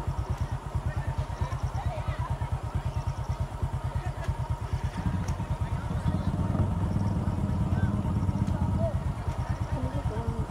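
A small engine idling with an even, rapid pulsing that grows louder about halfway through, with faint voices in the background.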